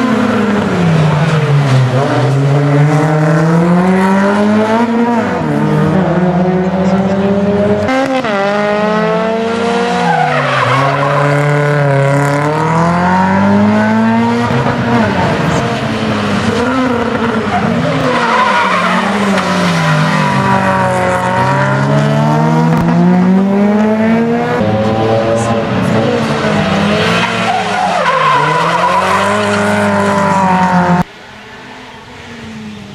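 Renault Clio rally car's engine revving hard, its pitch rising and falling every few seconds as it accelerates, shifts and brakes through the corners, with tyres squealing in the turns.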